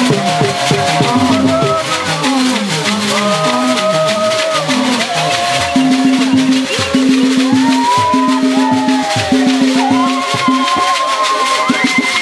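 A group of voices singing a church chant in call-and-response fashion, with shaken rattles keeping a fast, steady beat under the dancers' song.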